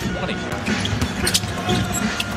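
Basketball being dribbled on a hardwood court during NBA game play, with music laid over it.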